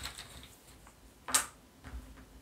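Small word tokens clicking against each other as a hand rummages in a velvet bag to draw one, with a sharper click about a second and a half in.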